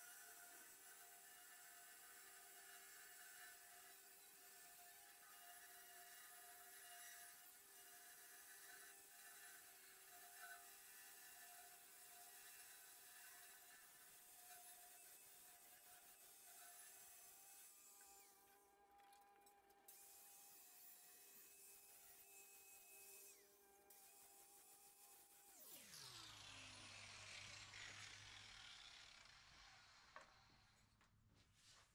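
Near silence: only faint steady hum tones, with a faint falling sweep about four seconds before the end.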